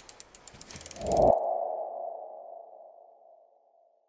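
Logo sting sound effect: a rapid run of ticks over a swelling low rumble, ending about a second in on a ringing tone that fades out over the next two seconds.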